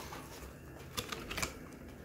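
A few light clicks and crackles of a thin clear plastic blister tray being handled, with small clicks at the start, about a second in and again shortly after.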